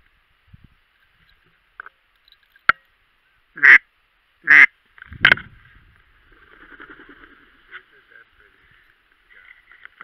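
Ducks quacking: three loud quacks about a second apart near the middle, over a steady faint chatter from the flock, with a sharp click shortly before them.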